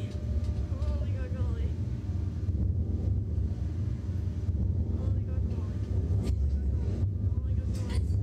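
Steady low rumble of wind buffeting the ride-mounted microphone, with faint voices in the background and two sharp clicks near the end.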